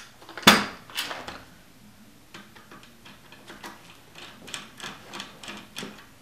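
Flathead screwdriver backing out the magazine-well screws of a Mosin-Nagant M91/30 rifle. There is a sharp click about half a second in and another near one second. After that comes a run of small ticks and scrapes, two or three a second, as the screws are turned.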